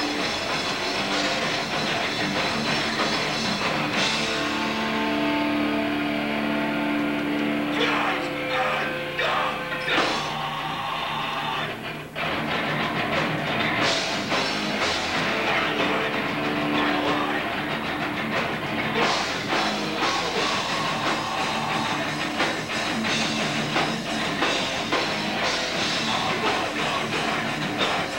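Live hardcore punk band playing at full volume: distorted electric guitars and a drum kit, with held guitar chords about five seconds in and again around sixteen seconds, and a brief break about twelve seconds in before the band comes back in.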